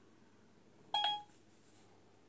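A single short electronic beep about a second in, from the Siri voice assistant acknowledging a spoken command to switch on a light. Otherwise near silence.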